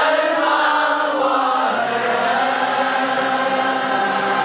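A large group of men and women singing a song together, many voices held on sustained notes.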